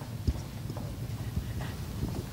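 A few footsteps of shoes knocking on a wooden stage floor, the loudest about a quarter second in and two more close together past the middle, over a steady low hum of the hall.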